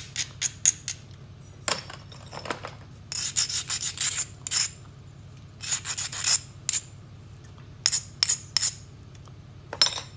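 An abrader rubbed in quick, scratchy strokes along the edge of a thin knapped stone flake, grinding the edge. The strokes come in bursts of several at a time with short pauses between.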